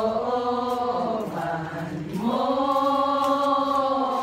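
A group of women singing a slow hymn together in long held notes. About a second and a half in the melody dips low, then rises into a long sustained note.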